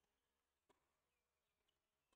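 Near silence, with one faint click about two-thirds of a second in.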